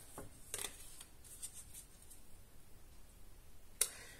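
A deck of tarot cards handled by hand: a few faint rustles of card stock, then one sharp click near the end.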